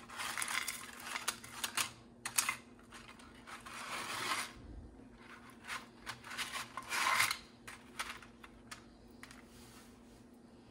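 Dry no-boil lasagna sheets being handled and laid into a glass baking dish: several short spells of scraping and rustling with light clicks.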